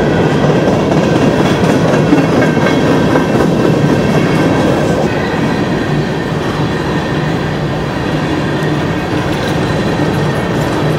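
Empty coal train's steel hopper cars rolling past at speed, the wheels clattering steadily over the rails.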